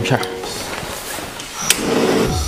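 A gas stove's burner knob turned with one sharp click near the end, followed by a short rush of the gas flame.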